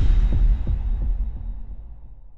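Deep bass boom of an intro sound effect, followed by a quick run of low thuds, about five in the first second, that die away.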